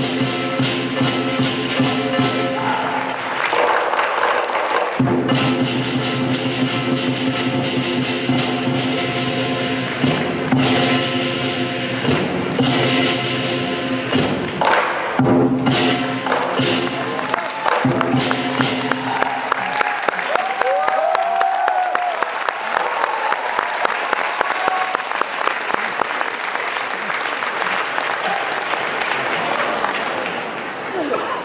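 Performance music with long held tones and rapid percussion strikes, cutting off about two-thirds of the way in as an audience breaks into applause with a few shouts.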